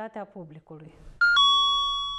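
Two-note electronic chime: a short higher note, then a lower note that rings on and fades over about a second. It marks a section title. A woman's speech trails off just before it.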